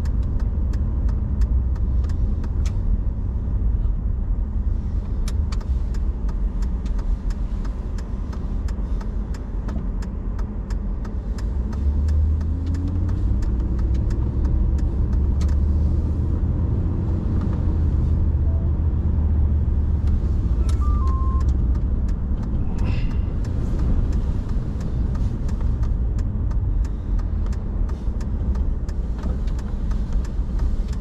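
Car driving on city streets, heard from inside the cabin: a steady low rumble of engine and tyres. From about twelve seconds in it grows louder, with a slowly rising engine note. Scattered light ticks and rattles run throughout.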